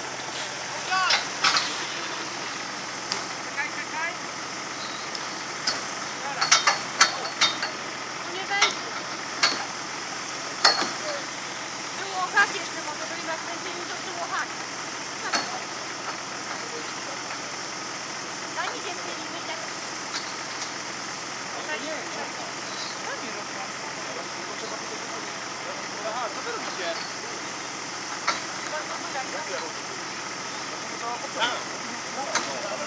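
An off-road 4x4's engine running steadily, under indistinct voices of people nearby and scattered short knocks and clicks.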